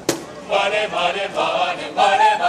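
A group of voices singing together in chorus, without instruments, starting about half a second in, just after a single sharp percussive hit.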